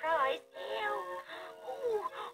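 Children's television programme music with a high, pitched voice singing or sing-speaking over steady backing tones, coming from a television's speaker and picked up in the room.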